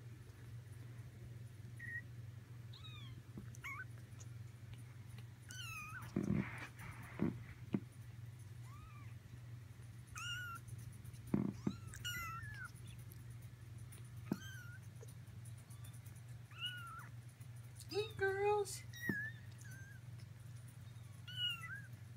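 Almost four-week-old Persian kittens mewing: many short, high-pitched calls, scattered throughout and coming faster near the end. A few knocks sound around the middle, over a steady low hum.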